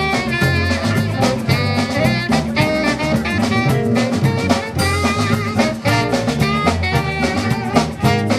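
Live jazz band playing an instrumental passage: saxophone over brass, with a steady drum beat.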